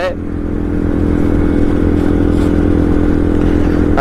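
Bajaj Pulsar 125's single-cylinder engine running steadily at highway cruising speed, heard from the rider's seat, with a low rumble and road and wind noise underneath; it gets slightly louder about half a second in.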